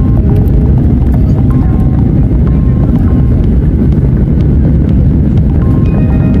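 Loud, steady rumble of an airliner's jet engines and wheels rolling down the runway, heard inside the passenger cabin. Background music plays over it.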